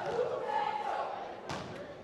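Voices, with one sharp knock about one and a half seconds in.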